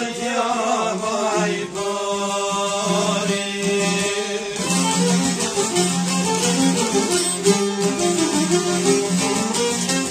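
Albanian folk music: an ornamented, wavering vocal line ends about two seconds in, then the band carries on with an instrumental passage of plucked strings over a steady low drone.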